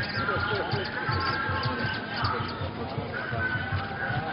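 Processional music: a drum beaten in a quick, steady rhythm, with a crowd of voices singing and calling over it.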